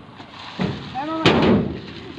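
Two heavy thumps about two-thirds of a second apart, the second the louder, with short calls from voices among them. No engine is running yet.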